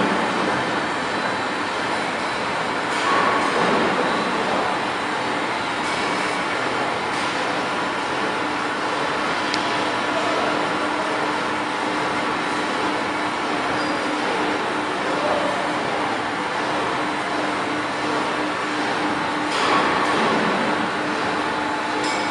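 Automatic bread production line running: dough-sheeting rollers and conveyor belts making a steady mechanical noise with a constant low hum.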